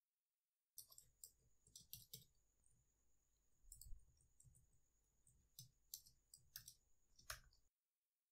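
Faint typing on a computer keyboard: irregular clusters of key clicks, starting about a second in.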